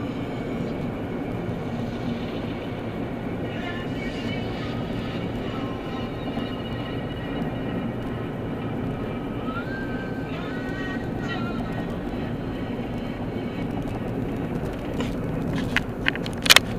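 Steady road and engine noise inside a car cruising on a freeway, heard through a weak camera microphone. Faint higher tones come and go in the middle, and a few sharp clicks sound near the end.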